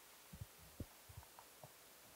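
Near silence broken by several faint, irregular low thumps and knocks through a handheld microphone, handling noise as its holder walks slowly with it held to his chest.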